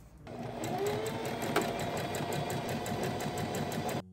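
Singer electric sewing machine stitching fabric: the motor speeds up with a rising whine about a quarter second in, then runs steadily with rapid needle strokes. There is one sharp click about midway, and the sound cuts off suddenly at the end.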